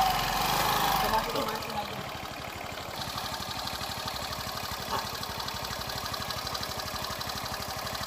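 Small motor scooter engine idling steadily, a fast, even beat that runs on unchanged; voices are heard over it in the first second or so.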